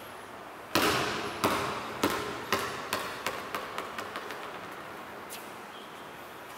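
A basketball dropped on a hard tiled floor, bouncing freely and settling: one loud first bounce, then about ten bounces coming ever faster and fainter until it rolls to rest, each echoing in the hall.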